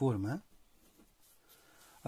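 A man's voice says one short word at the start, then only quiet room tone.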